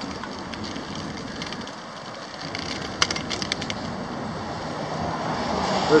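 Street traffic noise from cars moving past, with a short run of sharp clicks about halfway through and a car passing close as the noise swells near the end.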